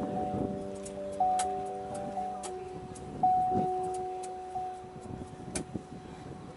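Electronic keyboard playing a slow song intro: held notes that ring and slowly fade, with new notes struck every second or two.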